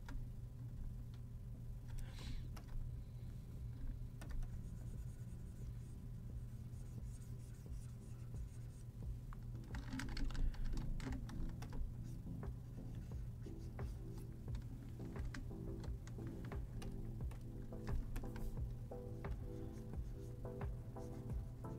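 Quiet background music with scattered clicks and taps from a computer keyboard and a pen stylus on a drawing tablet, the clicks coming more often from about halfway through.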